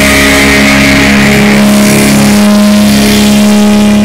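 Live rock band holding one sustained, distorted chord on electric guitar and bass, without drum hits, in a very loud, overdriven recording.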